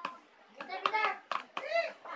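Hands handling slime in a plastic tub: a few short, sharp clicks and squishes. A child's brief murmured sounds come between them.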